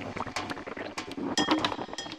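The quiet outro of a dark psytrance track: sparse, irregular glassy clinks and clicks with a few short electronic blips, after the full mix drops away at the start.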